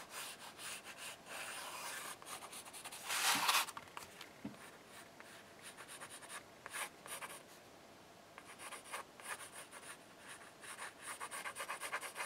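Pencil sketching on cardboard: faint, scratchy strokes of the lead across the surface, with one louder scrape about three seconds in.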